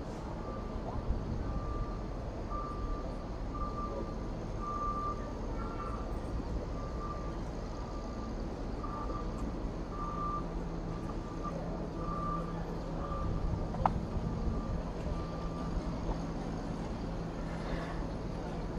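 A vehicle's reversing alarm beeping repeatedly, one high tone pulsing on and off, until it stops about two seconds before the end. A low steady hum joins about halfway through, and there is one sharp click near the end.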